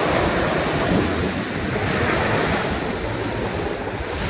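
Small waves breaking and washing up on a sandy beach, a steady surf wash that swells in the first couple of seconds and then eases off.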